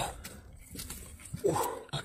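Bare hands digging and scraping in wet paddy-field mud with soft, faint crackles. Near the end comes a short, falling vocal cry.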